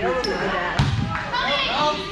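A volleyball hit during a rally, one sharp smack about a second in, amid players' and onlookers' voices calling out.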